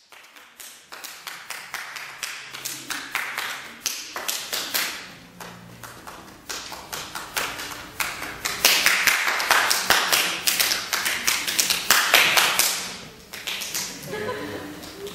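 Body percussion: a fast, irregular stream of hand claps and slaps that builds in loudness and density, is loudest in the second half and thins out shortly before the end.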